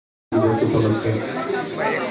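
A man speaking into a handheld microphone. His voice starts about a third of a second in, after a brief stretch of dead silence.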